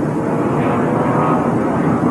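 Stock car racing engines running, a steady drone of engine and track noise.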